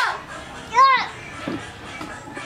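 Two short high-pitched whoops from a voice, each rising then falling in pitch, about a second apart, over background music.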